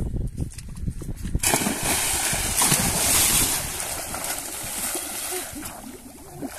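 A person jumping into pond water with a fishing spear: a sudden big splash about a second and a half in, then churning, sloshing water that fades away over the next few seconds.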